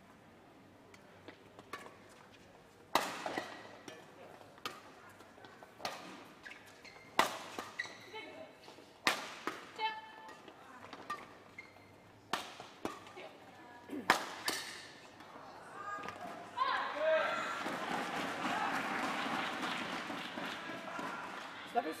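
Badminton rally: sharp racket hits on a shuttlecock, one every second or two. A crowd then cheers and claps for several seconds near the end as the point is won.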